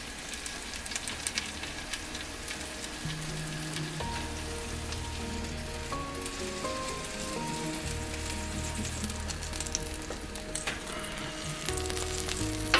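Breaded chicken drumsticks sizzling on mesh crisper trays in a hot oven: a steady crackling hiss. Soft background music comes in about three seconds in.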